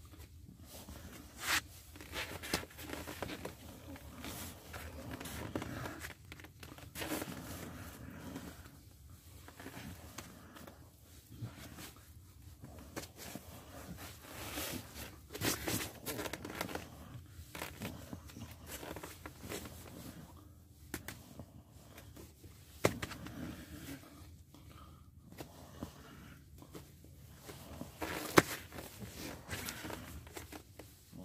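Irregular rustling and crinkling with scattered sharp knocks: a padded nylon jacket and cloth work gloves moving and brushing close to the microphone.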